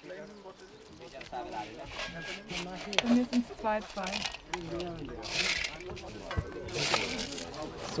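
Several people talking in the background, with two short scrapes of a trowel against dry earth, about five and a half and seven seconds in.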